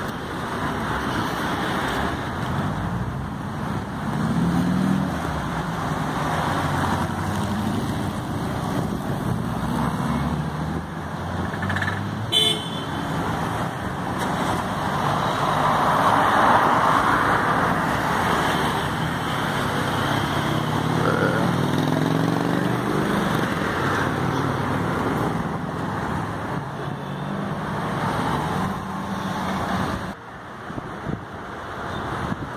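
Street traffic: car engines passing, their pitch rising and falling as they speed up and slow down. A louder rush of engine and tyre noise comes about halfway through, as a vehicle goes by close, and there is one short sharp sound shortly before it.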